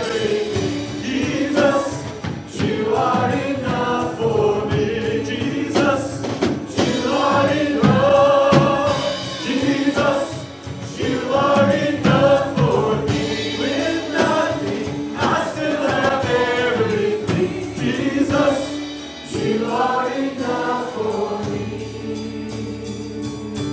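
Live contemporary Christian worship music: a woman sings lead with a man's voice joining her, backed by keyboard, electric bass guitar and drum kit. The line sung is "Jesus, you are enough for me".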